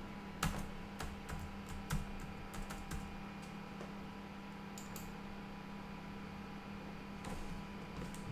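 Computer keyboard being typed on as a password is entered: an irregular run of sharp keystrokes in the first few seconds, one more around the middle and a couple of clicks near the end. A steady low hum runs underneath.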